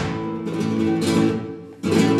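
Acoustic flamenco guitar playing seguiriyas: a strummed chord at the start rings out and fades, and another loud strum comes just before the end.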